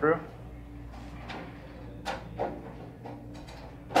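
Plastic aquarium lid being handled and fitted onto a glass tank: a few light knocks and scrapes, then one sharp click near the end, over a steady low hum.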